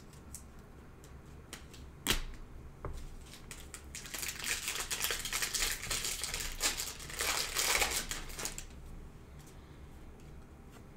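A sharp click about two seconds in, then a foil trading-card pack wrapper crinkling and tearing as it is opened by hand, for about four seconds before it dies away.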